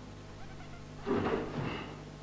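A single short, loud kiai shout from a karateka, starting about a second in and lasting under a second.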